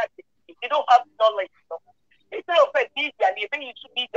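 Speech only: a voice talking over an online video call, in two short phrases with silent gaps between them.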